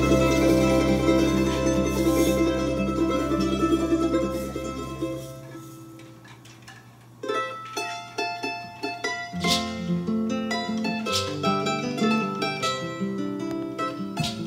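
Andean folk band with charango, classical guitar and double bass playing an instrumental passage. A dense strummed chord over a held low bass note fades out about six seconds in, then plucked charango and guitar notes start a new phrase, with the double bass joining a couple of seconds later.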